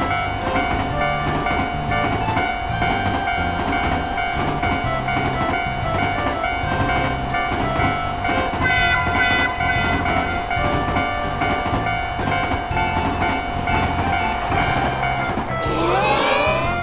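Cartoon sound effect of a bullet train passing with a steady rumble and repeated clacking, over background music with a held tone. A rising glide sound effect comes in right at the end.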